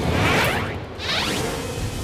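Two whoosh sound effects in quick succession, the second sweeping higher and ending about a second in, over a low steady background.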